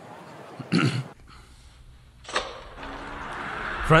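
A sharp click about two seconds in, then a low rumble building steadily as 1:64 die-cast toy cars roll down an orange plastic Hot Wheels track.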